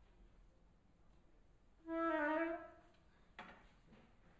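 A single short flute note, held steady for a little under a second and then fading, played alone in a quiet hall. A soft click follows near the end.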